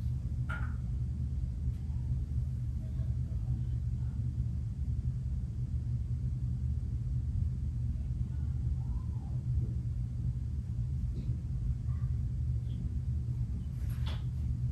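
Steady low rumble throughout, with a few faint light knocks in the second half.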